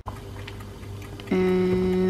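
A faint, steady low hum in the kitchen, then, from just past the middle, a woman's drawn-out 'En…' held on one pitch for about a second.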